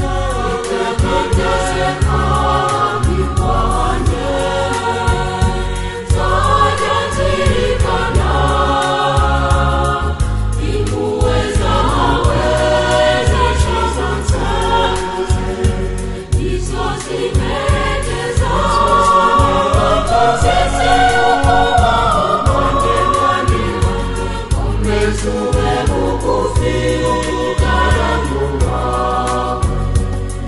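Gospel-style song sung by a choir of voices over a heavy, pulsing low accompaniment.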